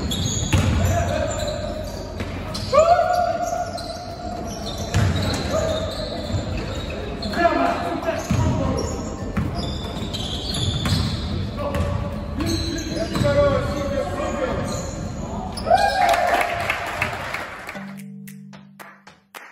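Basketball game on a wooden gym floor: a ball bouncing as it is dribbled, with sneakers squeaking in short bursts and players calling out.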